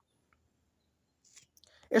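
Near silence with a few faint clicks late in the pause, then a voice starts speaking right at the end.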